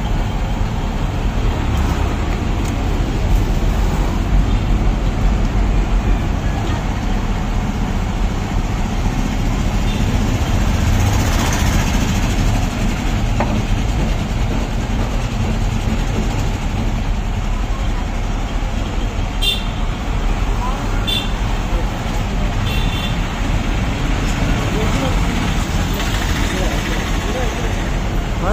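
Motorised sugarcane juice crusher running steadily, its rollers and gears turning with a constant low hum and rumble. A few short clinks come near the two-thirds mark.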